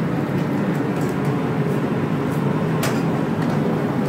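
Sacramento Regional Transit light-rail train arriving at the platform: a steady rumble of wheels and motors, with one short click about three seconds in.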